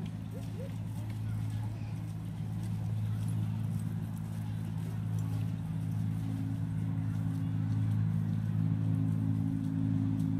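Diesel engine of a 10¼-inch gauge Alan Keef miniature locomotive running out of sight with a steady low drone, growing a little louder toward the end as it approaches.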